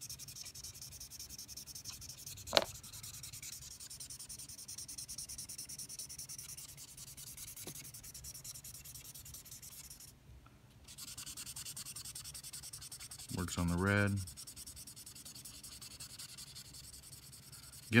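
Felt-tip colorless blender marker (Winsor & Newton Pigment Marker) scrubbing back and forth over thin marker paper in quick short strokes, blending laid-down colour. A single sharp tick comes a little over two seconds in, and the scrubbing stops briefly about ten seconds in.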